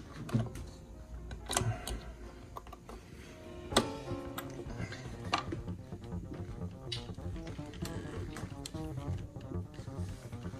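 Sharp clicks and knocks of a guitar body and its tremolo hardware being handled and turned over on a workbench, irregular and a second or so apart, with the loudest knock near the middle.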